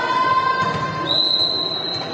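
A referee's whistle in a volleyball hall: one steady, high-pitched blast starting about a second in and held to the end, over the crowd's hubbub.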